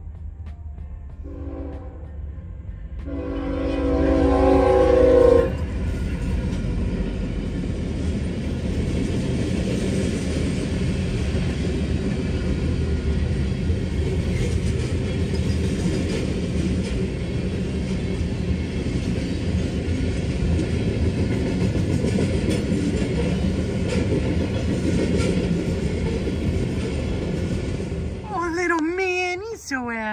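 Freight train horn sounding, a shorter, weaker blast about a second in and then a long, loud one about three seconds in. After that the train passes the crossing with a steady rumble and clatter of hopper cars on the rails, heard from inside a car.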